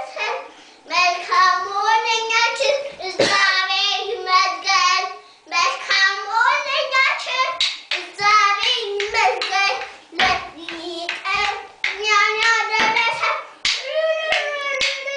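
A young child singing, a high voice in short phrases with wavering held notes and brief breaks between phrases.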